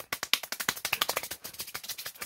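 Rapid hand clapping, an even run of about ten to twelve sharp claps a second.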